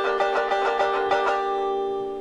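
Plectrum banjo picked in a fast tremolo of about six or seven strokes a second, the three-vibration tremolo. It then settles on a held chord that rings out and starts to fade near the end.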